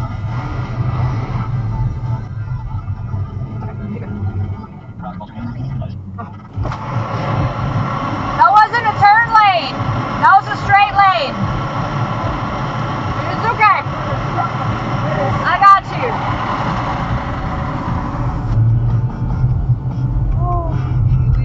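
Steady engine and road hum heard from inside a car's cabin by a dashcam, with a person's raised voice sounding in several short outbursts in the second half.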